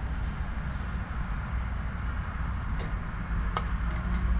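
Steady low vehicle rumble, with two light clicks of a metal fork against a pan near the end.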